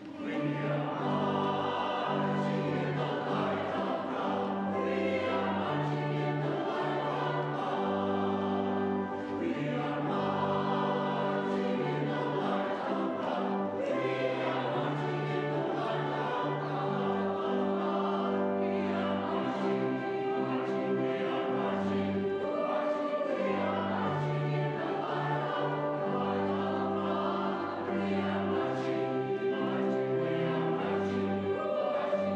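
Congregation and choir singing a hymn together over pipe organ accompaniment, the organ holding steady chords beneath the voices.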